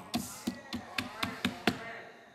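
Hand tapping on a wooden pulpit: about seven sharp taps, roughly four a second, stopping near the end.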